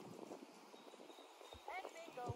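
Near silence: faint outdoor background, with a faint voice starting near the end.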